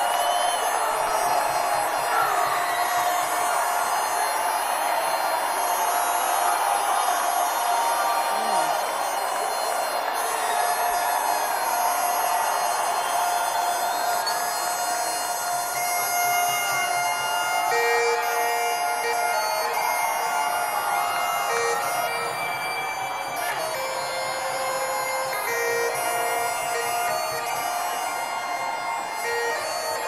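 Bagpipes played live through a concert PA over crowd noise. A steady drone holds, and from a little past halfway a melody of separate held notes comes in.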